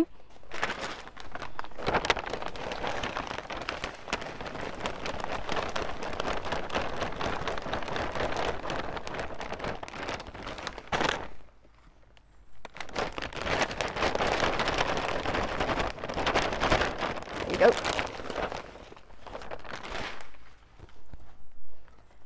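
Compost being poured from a plastic sack into a plastic seed tray: a continuous rustling patter of compost with the sack crinkling, in two long pours with a short pause about halfway through.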